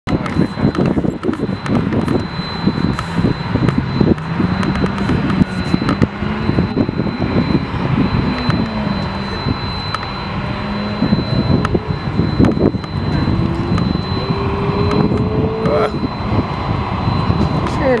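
Lexus IS300's inline-six engine working hard through an autocross cone course, its pitch rising and falling with the throttle between corners and climbing steadily over the last few seconds as the car accelerates.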